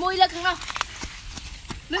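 A high-pitched woman's voice speaking, then a gap with a few sharp, separate clicks or knocks, and speech starting again near the end.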